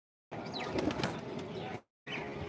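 Pigeons flapping their wings and moving about, with a faint call or two. The sound cuts out completely for a moment at the very start and again just before the end.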